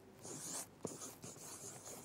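Pen scratching on paper in short strokes, with one light tap a little under a second in.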